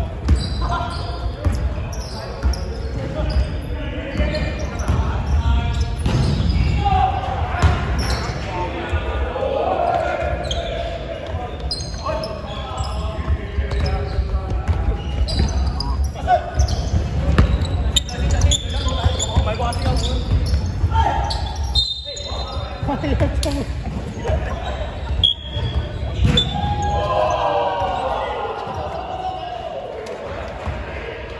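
A basketball bouncing on a wooden court during play, with players' voices calling out, echoing in a large sports hall.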